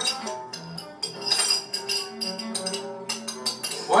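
A spoon tapping against a jar, cut into a fast run of clinks set to music, with steady tones underneath.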